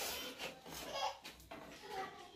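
Leafy greens rustling as hands sort and handle them in a metal bowl, in short rustles at the start and again about a second in, with a faint voice in the background.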